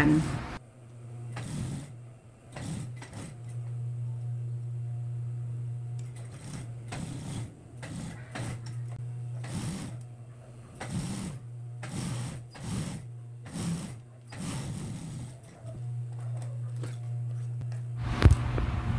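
Industrial sewing machine with a steady motor hum, broken by short irregular bursts of stitching as the needle runs in spurts while a garment facing is topstitched.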